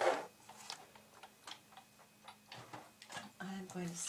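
Big Shot die-cutting machine and its cutting plates being worked through a second pass: a sharp click at the start, then faint, irregular ticks.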